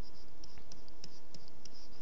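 Pen stylus scratching lightly on a tablet in short strokes as an equation is written out, over a steady background hiss.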